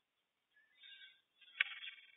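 Quiet pause in a sermon recording: mostly near silence, with faint high-pitched noise just before the middle and a small click about one and a half seconds in.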